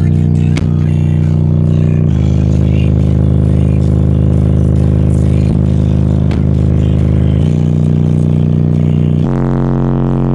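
Bass-heavy music played loud through two Rockford Fosgate P3 15-inch subwoofers. Long held low bass notes shift pitch about two seconds in, again near seven and a half seconds, and once more near the end.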